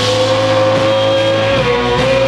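Live rock band (electric guitar, bass, synth and drums) playing, recorded on a Wollensak reel-to-reel tape recorder. One high note is held steady for about a second and a half, then drops a step and comes back up near the end.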